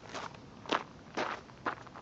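Footsteps on gravel, four steps about half a second apart.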